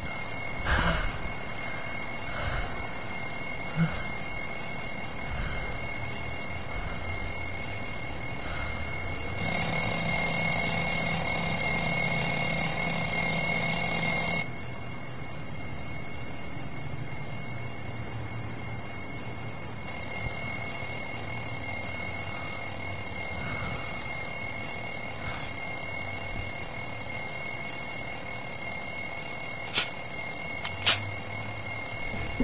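Alarm clock ringing on and on with a steady high ring, louder for about five seconds near the middle.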